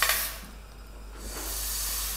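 Whole coriander seeds pouring from a stainless steel bowl into a stainless steel frying pan: a dry hissing rattle of seeds on metal, which dips about half a second in and builds again.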